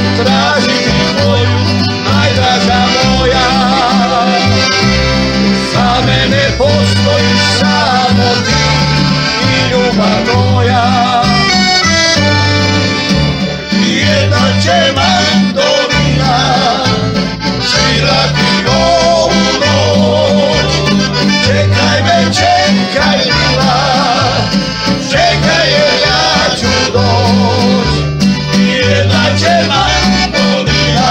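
A small folk band playing live: men singing to piano accordion, strummed acoustic guitar, violin and double bass, the bass line stepping evenly between notes under the tune.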